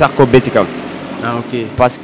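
A man speaking in short, halting phrases into a handheld microphone, with a steady background noise filling the pause in the middle.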